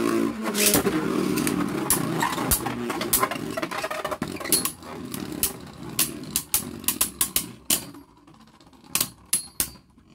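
Two Beyblade Burst tops spinning on the plastic floor of a Beyblade Burst QuadStrike stadium, a steady whirring that fades away over about eight seconds as they slow down, with sharp clacks each time they strike each other. Near the end a few separate clacks as the slowing tops wobble and knock together.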